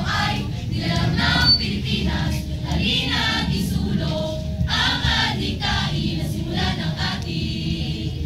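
A large group of student voices singing together in short choral phrases as part of a verse-choir performance.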